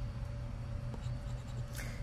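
Soft scratching of a scratch-off lottery ticket's coating with a plastic chip, over a steady low hum.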